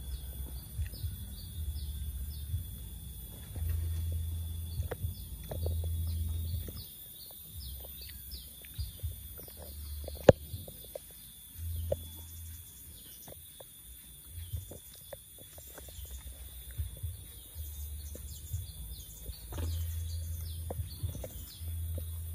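Small birds chirping over and over in short falling notes, over a thin steady high tone and bursts of low rumble on the microphone. A sharp click sounds about ten seconds in.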